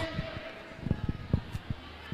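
Quiet race-track ambience: faint background voices and noise, with a few irregular low thumps.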